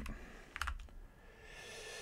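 A few keystrokes on a computer keyboard, then a faint hiss near the end.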